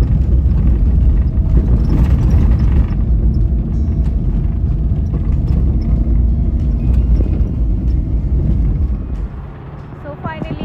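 Steady low rumble of a moving vehicle's road and engine noise, easing off near the end.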